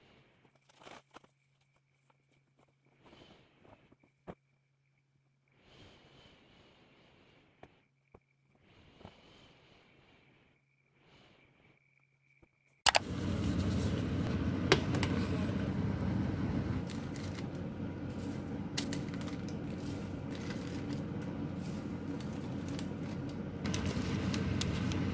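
Soft, faint rustling of clothes being handled and folded over a low steady hum. About thirteen seconds in, a sudden switch to a loud steady kitchen noise from cooking at the stove, with a few sharp clinks.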